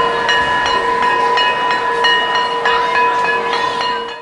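Title-sequence sound effect: a steady held tone, like a horn or whistle, sounds over a noisy rattle with regular clicks about two or three times a second.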